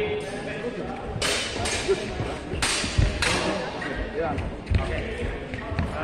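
Busy sports-hall background of distant voices and footsteps on the floor, with a few dull thuds and several short rushes of noise, in a large echoing hall.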